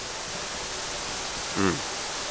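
A steady, even hiss of outdoor background noise with no pitch or rhythm.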